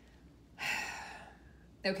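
A woman's sigh: one breathy exhale starting about half a second in and fading away over about a second.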